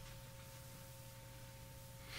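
Near silence: faint room tone with a steady low electrical hum and two faint, steady higher tones.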